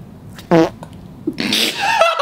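A short, wet, fart-like squelch with a steeply falling pitch as a plastic spoon pushes into a gelled cylinder of old condensed mushroom soup. Near the end comes a breathy cry of disgust.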